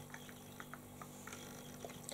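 Faint light clicks and ticks, about eight spread over two seconds, over quiet room hum, as a plastic eyeshadow palette and its cardboard box are handled.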